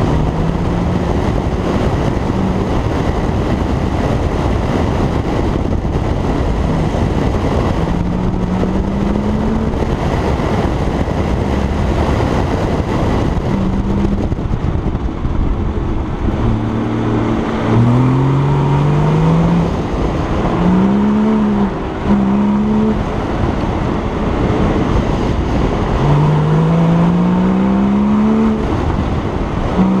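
Porsche 981 Cayman S flat-six engine being driven hard through an autocross course, its note climbing in pitch again and again as it accelerates between cones and dropping away when the driver lifts or brakes. A constant rush of wind and road noise on the outside-mounted camera's microphone runs under the engine.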